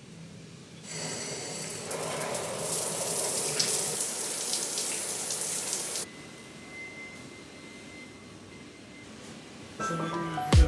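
Outdoor shower running: water spraying from the overhead shower head onto a pebble floor, starting about a second in and cutting off abruptly about six seconds in.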